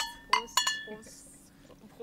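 Brown glass beer bottles clinking together in a toast: a few quick clinks in the first second, each ringing briefly.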